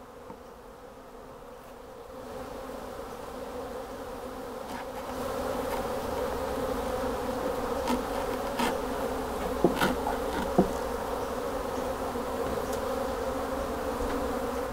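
A mass of honey bees buzzing as they are tipped from an opened package box into a hive, a steady hum that grows louder over the first few seconds and then holds. A few light knocks come through in the middle.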